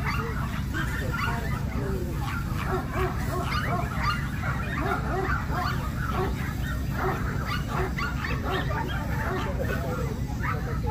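Many dogs barking and yapping at once, the calls overlapping in a constant din, with a murmur of voices and a steady low rumble underneath.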